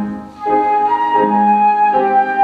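A small wind instrument plays a slow carol melody in long held notes over piano accompaniment, with a brief break in the sound just before half a second in.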